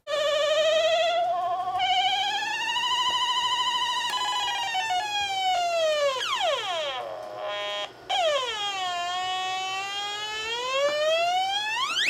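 Small analog synthesizer played with a stylus on its ribbon strip: a single tone with a wavering vibrato that slides slowly up, then down in long swooping glides like a siren. It breaks off briefly about eight seconds in and ends with a fast upward sweep.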